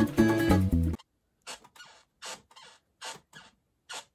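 Intro music with plucked guitar cuts off abruptly about a second in, followed by about six short shuffling and creaking noises of a chair being sat in and shifted on.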